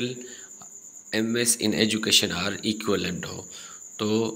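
A man's voice speaking briefly, starting about a second in, over a steady faint high-pitched tone that runs under the whole recording.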